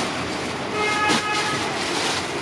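Plastic packaging rustling as a wrapped item is handled and pulled from a wire display basket, over steady background noise. A steady pitched tone sounds for just under a second a little before the midpoint.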